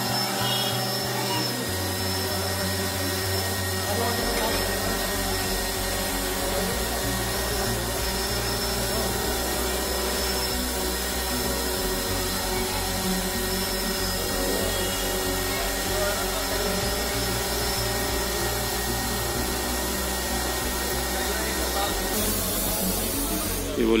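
Small quadcopter drone's electric motors and propellers running as it lifts off and hovers: a steady buzzing hum of several tones that waver slightly.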